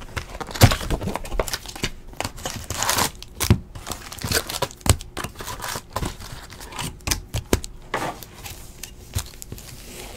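Foil hockey card pack wrapper being torn open and crinkled by hand, with irregular crackles and snaps, busiest in the first half, then the cards inside being handled.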